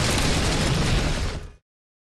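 Explosion-like sound effect of an animated logo outro: a dense, loud crash with a heavy low rumble that fades out about a second and a half in, leaving silence.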